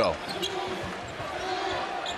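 Basketball being dribbled on a hardwood court, heard through the steady murmur of an arena crowd.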